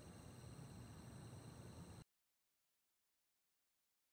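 Near silence: a faint steady hiss of room tone for about two seconds, then the sound drops out to dead silence.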